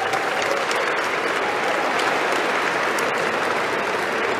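A large banquet audience applauding steadily.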